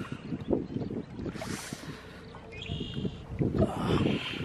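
Lake water splashing and lapping close to the microphone at the shoreline, in uneven bursts with a brief hissing splash about a second and a half in.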